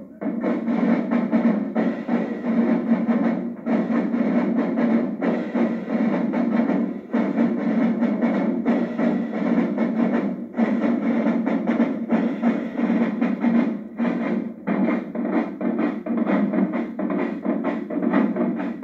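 Marching band drumline playing together: snare drums and marching bass drums in a fast, dense cadence, with short breaks between phrases every few seconds.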